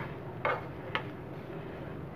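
Steel spoon knocking against a frying pan while mashing a chicken and potato cutlet mixture: two short clicks about half a second apart, the first about half a second in.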